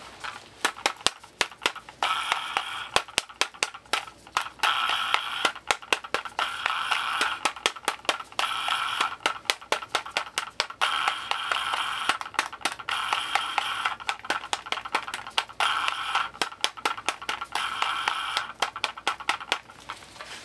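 Fast fingernail tapping and scratching on a handheld black plastic object: rapid sharp clicks, broken up by repeated scratchy rubbing passes about a second long.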